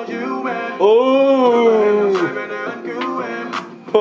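Vietnamese R&B/hip-hop song with a man singing Vietnamese lyrics. About a second in he holds one long note that bends up and then down, over a steady backing track.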